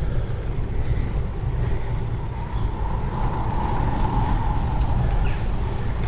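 Wind rushing over a bike-mounted camera's microphone and tyre rumble on tarmac while riding a road bike, with a faint whir that swells and fades about halfway through.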